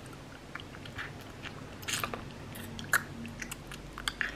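Quiet mouth noises: scattered small clicks and smacks of lips and tongue while a paper tissue is rubbed over the mouth to wipe off make-up, with the sharpest clicks about two and three seconds in.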